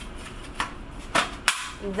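Several sharp clicks and taps from the metal magnet plate of a magnetic polycarbonate chocolate mold being handled, the loudest at the very end.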